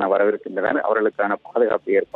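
A man speaking Tamil in a running news report over a telephone line, his voice narrow and thin like phone audio.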